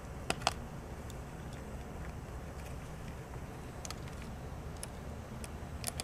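A few light clicks and ticks from battery clamp leads being handled and clipped on, two sharper ones about a third and half a second in, over a steady low background rumble.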